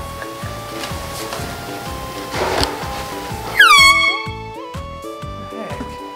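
A handheld canned air horn blasts once, about three and a half seconds in. It is a sudden, loud, blaring tone about a second long that settles slightly in pitch at its start, and it is the loudest thing heard. Background music with a steady beat plays throughout.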